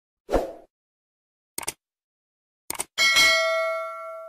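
Subscribe-button animation sound effects. A short thump comes first, then two quick double clicks about a second apart, then a bell ding that rings on and slowly fades.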